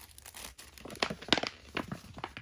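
Clear plastic craft packaging crinkling as a packaged item is handled and set down on a pile of other wrapped items. It is an irregular run of sharp crackles starting about half a second in, loudest a little after one second.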